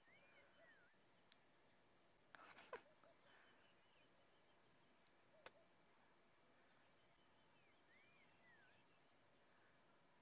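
Near silence: faint open-air quiet, with a bird's soft whistle rising and falling, given twice, once at the start and again about eight seconds in. A brief faint rattle of clicks comes about two and a half seconds in and a single sharp click about five and a half seconds in.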